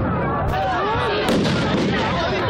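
Two sharp firework bangs, less than a second apart, over the chatter of a crowd.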